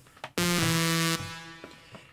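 A single sawtooth lead note from a Thor synthesizer in Reason, bright and buzzy, held for under a second, then a reverb tail that fades out after the note stops. The reverb is sidechain-compressed so that it ducks while the lead plays and rings out in the gaps.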